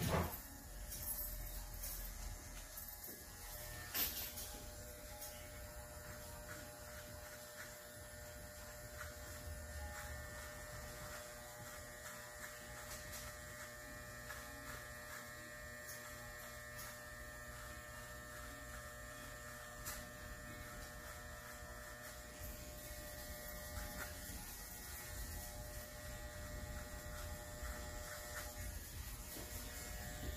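Corded electric hair clippers running with a steady buzz as they trim a beard along the jaw and neck. A short click comes about four seconds in.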